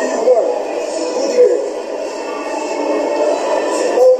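Indistinct voices with background music from the interview video playing back, thin-sounding with almost no bass.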